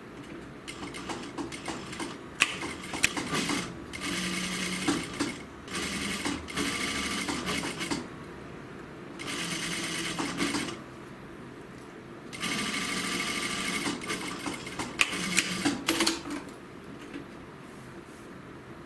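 Industrial sewing machine stitching through jacket fabric in four short runs of one and a half to three and a half seconds, stopping between runs, with scattered sharp clicks in the pauses. It is sewing a pocket flap into a double welt pocket.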